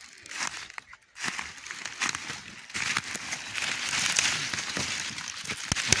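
Dry fallen leaves rustling and crackling as someone moves through the leaf litter, in uneven bursts starting about a second in and growing louder.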